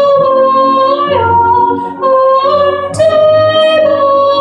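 A high voice singing slow, long-held notes over soft low accompaniment. The melody steps down about a second in and rises again near three seconds.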